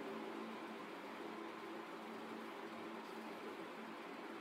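Quiet room tone: a steady low hum with a faint hiss.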